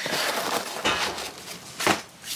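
Cardboard pizza box being handled and shut, with rustling and a soft knock, then one sharp knock near the end as the lid or box comes down.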